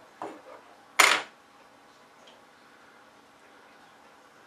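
Brief handling noises: a soft scuff right at the start, then one sharp click about a second in, over faint room tone.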